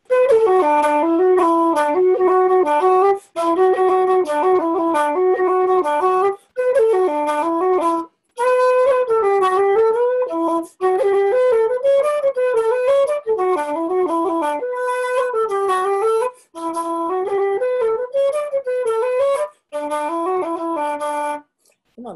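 Wooden keyed Irish flute playing a slip jig of the open, lilting kind with spaced-out notes, in triple time. The tune runs in short phrases broken by brief pauses every two to three seconds.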